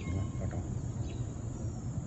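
Steady outdoor background noise: a low rumble with faint, thin high tones above it, with no sudden events.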